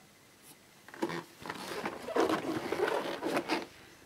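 Scraping and rustling handling noise as a Bosch Perfecta cylinder vacuum cleaner is turned over on carpet. It is a run of short scrapes and clicks starting about a second in and stopping just before the end.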